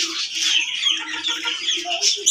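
Many small caged birds chirping and chattering at once, short overlapping calls throughout.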